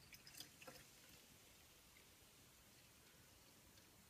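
Near silence, with a few faint drips in the first second as orange cordial trickles from a small cup into a bottle of carbonated water.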